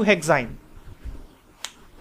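A man's voice trails off in the first half-second, then a pause with one sharp click about one and a half seconds in.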